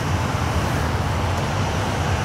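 Steady city street traffic noise, a low rumble with a hiss over it.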